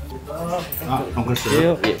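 Metal chopsticks and brass bowls clinking on a restaurant table, with a plate set down near the end, under voices.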